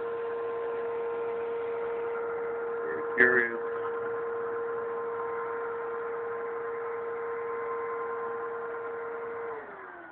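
Vacuum cleaner motor running with a steady whine, switched off near the end so that its pitch falls as it winds down. About three seconds in, a short high-pitched sound cuts in over it, the loudest moment.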